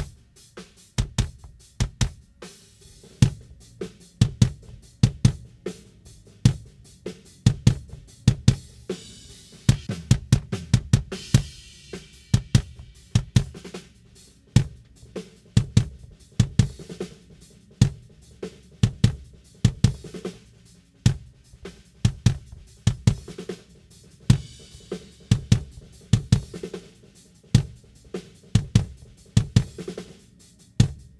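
Drum kit playing a steady groove of kick, snare and hi-hat, with cymbal washes about ten and twenty-five seconds in, heard through the mixing console. The kick drum's inside mic has its polarity flipped and its delay is being adjusted against the overhead mics to find where the low end cancels most.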